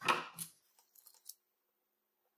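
A man's voice finishing a sentence, then a few faint clicks as small tools are handled on a workbench, then the sound cuts to dead silence about halfway through.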